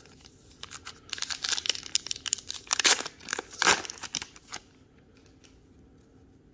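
The plastic-foil wrapper of a pack of baseball cards being torn open and crinkled, a run of sharp crackling tears and rustles that stops about four and a half seconds in.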